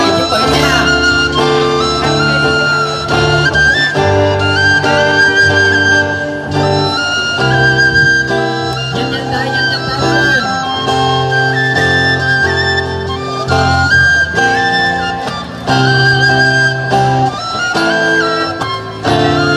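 Vietnamese bamboo transverse flute (sáo trúc) playing a melody of long held notes over guitar accompaniment.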